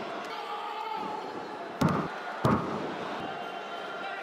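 Two loud thuds of wrestlers' bodies landing on the wrestling ring's mat, about two-thirds of a second apart a little before halfway through, over steady arena crowd noise.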